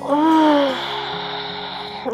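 A voiced sigh that rises and falls in pitch, trailing into a long breathy exhale, the release of a full-body stretch, over soft background music.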